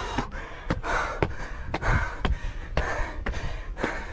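A man panting hard from climbing a long flight of stone steps, heavy gasping breaths about once a second, with short sharp taps about twice a second.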